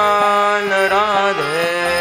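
Kirtan: a male lead singer holding a long sung line of a devotional chant, his pitch dipping about halfway through and rising again, over a steady drone, with mridanga drum strokes.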